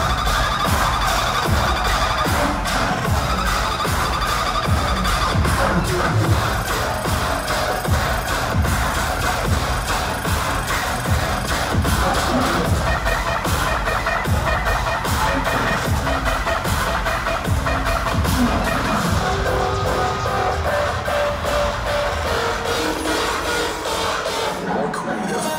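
Dubstep played loud over a concert PA system, with heavy bass hits in a steady beat under dense synths.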